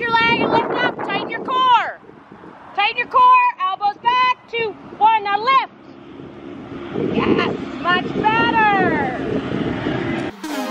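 A woman's raised voice calling out in short phrases, pitched high like shouting across an arena, with wind rumbling on the microphone.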